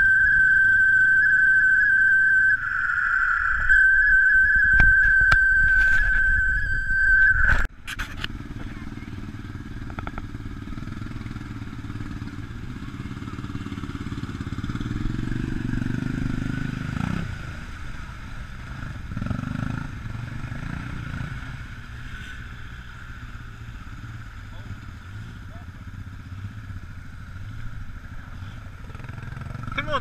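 ATV engines running as the four-wheelers work through deep mud. For the first several seconds a loud steady high whine sounds, then cuts off suddenly, leaving a lower engine rumble that rises and falls.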